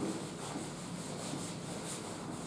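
A duster rubbing across a whiteboard, wiping off marker writing in repeated strokes.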